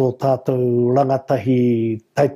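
Only speech: a man talking in te reo Māori, drawing out long, even vowels.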